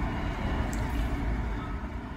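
Steady low rumble of background noise picked up by a presenter's microphone, with no speech.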